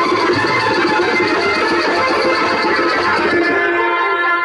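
Loud Indian dance music playing, full of sustained instrument notes.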